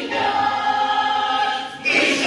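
Children's choir singing, holding one long note, then striking up a new, louder phrase near the end.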